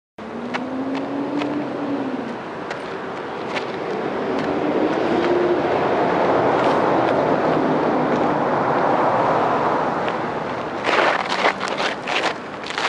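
A rushing noise that swells to a peak midway and fades again, then a cluster of sharp scuffs and crunches of shoes on gravel about a second before the end.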